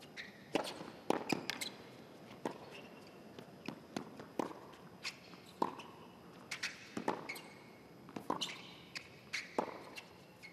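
Tennis serve and rally on a hard court: sharp pops of racket strings striking the ball and the ball bouncing, about one to two a second. Short high squeaks of shoes on the court come between shots.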